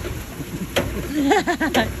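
Hydraulic ram water pump clacking about once a second as its impulse valve slams shut, each time the flowing water is suddenly stopped and forced up into the air dome. A man's voice sounds briefly between the clacks.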